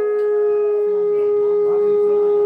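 Conch shell (shankha) blown in one long, steady note.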